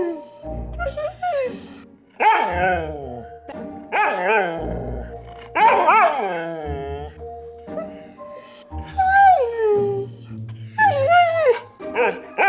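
Siberian huskies 'talking': a back-and-forth run of drawn-out howls and yowls that slide up and down in pitch, the one about nine seconds in falling steeply, over background music with a steady bass.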